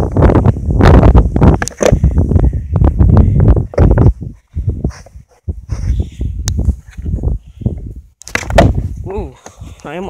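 Skateboard wheels rolling over rough asphalt, a loud rumble with small clacks that pauses briefly about four seconds in. Near the end the board hits the ground with a sharp smack during an attempted trick.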